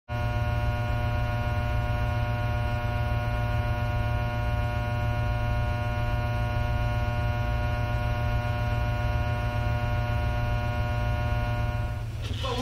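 Steady electrical mains hum: a low buzz with many evenly spaced higher tones above it, unchanging in pitch and level.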